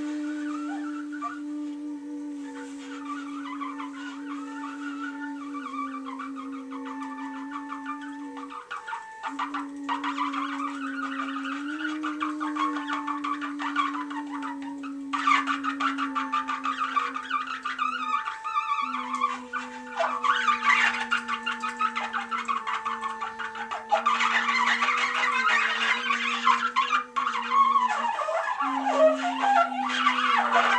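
Free-improvised music on bowed upright bass and trumpet. A long held low line steps slowly down in pitch, and busy, rough trumpet sounds above it grow louder about halfway through and again near the end.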